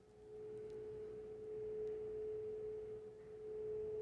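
A single steady tone, held for about four seconds with a brief dip about three seconds in.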